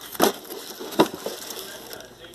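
Scope packaging being handled: bubble wrap and cardboard crackling, with a few sharp clicks, the loudest about a second in.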